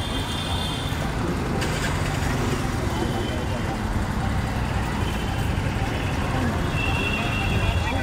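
Steady low rumble of road traffic, with faint voices in the background.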